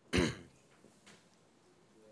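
A man clears his throat once, a short burst about a quarter of a second long just after the start, followed by quiet room tone.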